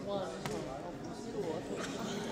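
Low murmur of many voices talking among themselves in a large parliamentary chamber during a division count, with a sharp knock about half a second in and a lighter tap near the end.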